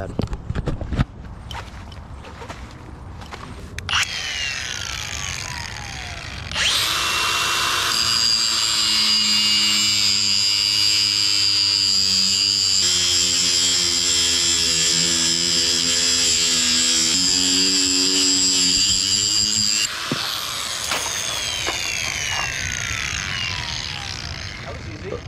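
Milwaukee cordless angle grinder with a cut-off wheel cutting through a steel chain. It starts about four seconds in, rises to a loud, steady high-pitched shriek for about thirteen seconds, then winds down with a falling whine once the cut is through.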